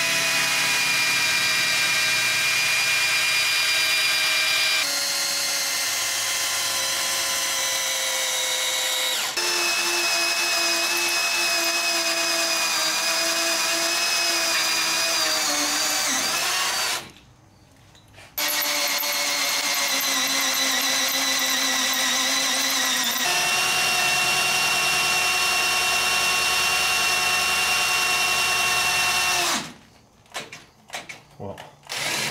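Power drill boring through the S-10's steel front spindle to open up a bolt hole, first with a pilot bit and then a larger bit. The motor whines steadily and shifts pitch several times as the speed changes. It stops for about a second around two-thirds of the way through, then runs again until just before the end.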